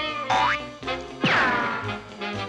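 Cartoon sound effects over the music score: a short rising whistle-like glide about a third of a second in, as a foot is pricked with a pin, then a louder falling glide about a second later.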